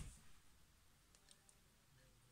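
Near silence, with three faint small clicks a little past the middle as a small cosmetic sample tub is handled.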